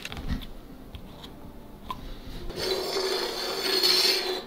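A few faint clicks as a small screw hook is twisted by hand into a white tabletop. Then, from about two and a half seconds in, a steady scraping rub as a soda can slides across the tabletop, pulled by fishing line.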